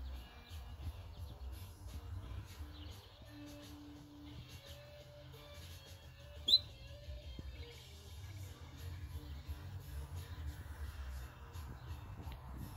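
A groundhog hiding under the shed gives one short, shrill, rising chirp about halfway through, over a low rumble.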